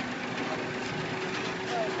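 A motor vehicle engine idling steadily, a low even hum with a constant pitch, over street noise.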